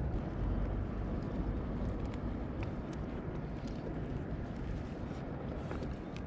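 Steady low rumble and hiss of wind on the microphone and water around a kayak, with a few faint light ticks.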